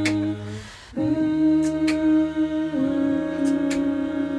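An a cappella choir of men and women holding sustained chords. The chord breaks off briefly about half a second in with a short hiss, resumes about a second in, and shifts to a new chord near the three-second mark. A few sharp clicks sound over the voices now and then.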